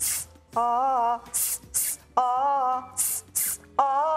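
A woman's voice doing a diaphragm breath-support exercise: short, sharp hissing exhales, mostly in pairs, alternating with short sung vowel notes of about half a second each.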